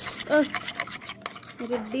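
Metal spoon stirring and scraping thick, mushy food in a bowl, a quick run of wet scrapes and small clinks against the bowl. A short voice sound cuts in about a third of a second in.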